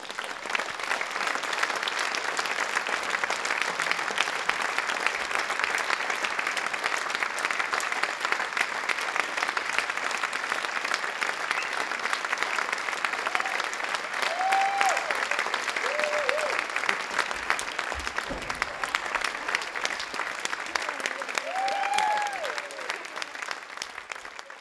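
Theatre audience applauding: dense, steady clapping that fades out near the end, with a few short calls rising above it about two thirds of the way in and again shortly before it fades.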